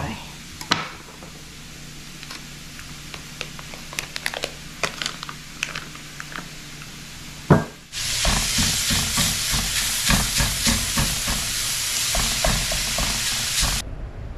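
Soft clicks and taps of handling at first, a sharp thump just before halfway, then ground pork sausage browning in a hot skillet: a loud, steady sizzle with a spatula stirring and scraping through it, cutting off suddenly near the end.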